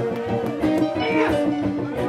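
Live band playing amplified guitars over a drum kit, with sustained guitar notes and steady drum hits.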